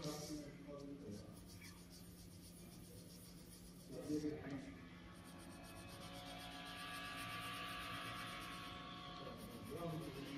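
Pencil scratching steadily on paper as a drawing is coloured in, from about six seconds in, with a brief voice about four seconds in.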